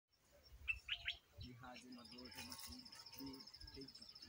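Three quick bird chirps about half a second in, then an insect trilling steadily at a high pitch from about two seconds on, all faint.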